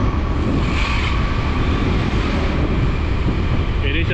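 Steady wind rush on the microphone with vehicle and road noise from riding along a paved road, loudest in the low rumble.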